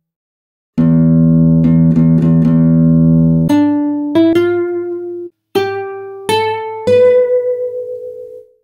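Classical guitar playing a slow modern atonal passage. After a brief silence, a low chord rings with a few notes plucked over it, then single plucked notes follow one at a time, each left to ring and die away.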